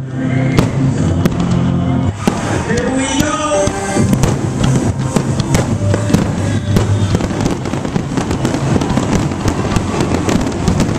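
Aerial fireworks shells bursting in quick succession, their bangs and crackles packed more densely after about four seconds, over loud music in the first half.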